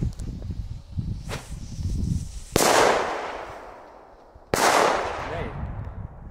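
Two firecrackers bang about two seconds apart, each a sharp report followed by a long fading echo.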